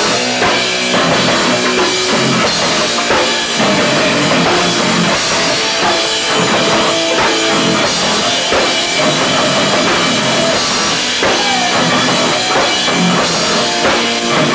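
Hardcore punk band playing live and loud, with drum kit and electric guitar.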